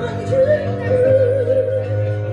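A woman singing live, holding one long note with vibrato over sustained chords played on a Nord Electro 6 stage keyboard.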